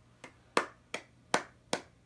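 One person clapping hands in a slow, even rhythm, about five claps at a little over two a second, the first one softer.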